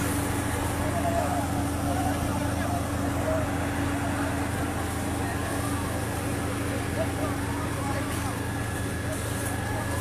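Steady low drone of a running engine, with distant voices of people talking over it.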